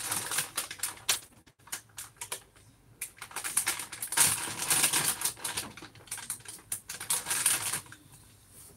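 Someone rummaging through things on a storage shelf, making a rapid crackly rustling with many small clicks as packaging is handled. The sound comes in two spells, with a lull between about one and three seconds in.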